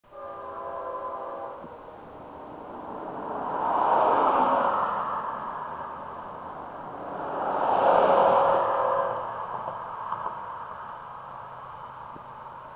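A distant freight locomotive horn sounds a chord for about a second and a half. Then two cars pass close by on the road, each a swelling rush of engine and tyre noise that rises and fades, the second about four seconds after the first.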